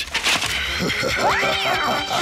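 A cartoon cat's yowling laugh, rising and then falling in pitch, about a second in, over a held note of background music.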